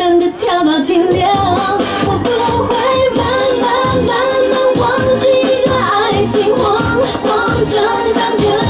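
Mandarin pop song with a woman singing over a steady dance beat.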